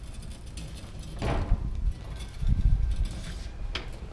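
Tent canvas rustling as the hinged shell lid of a 1988 Combi Camp tent trailer is swung over, then low thuds about two and a half seconds in as the lid and its frame come down, with a few more fabric rustles near the end.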